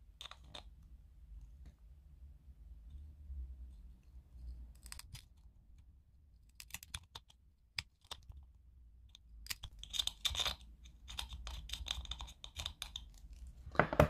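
Side cutters clicking and scraping on a small LED bulb circuit board as a surface-mount resistor is broken off. There are faint scattered clicks at first, then a denser run of small clicks and crunching in the second half, and a sharper click near the end.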